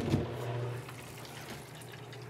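Small electric water pump switched on by being plugged in, then running steadily with a low hum and churning water as it circulates the water in the tub.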